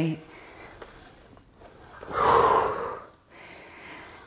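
A man's forceful exhale of exertion, about a second long, near the middle, as he pulls an ab wheel back in during a kneeling rollout.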